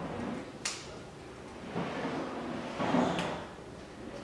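Scissors cutting through black paper: stretches of papery scraping cuts, with a sharp snap of the blades about half a second in and another a little after three seconds.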